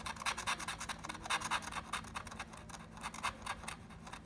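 A plastic scratcher tool scraping the coating off a paper lottery scratch-off ticket in quick back-and-forth strokes, several a second, thinning out near the end.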